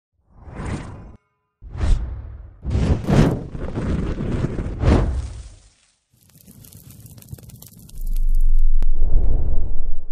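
Logo-intro sound effects: a run of sudden whooshing hits with booming low tails, then a stretch of fine crackle, then a loud low rumble from about eight seconds in that stops abruptly.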